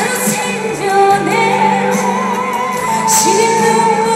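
Woman singing a trot song into a microphone over accompanying music, holding long notes with a wavering vibrato in the second half.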